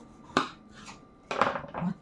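A single sharp click or knock about a third of a second in, then a brief clatter of handling noise before a spoken word near the end.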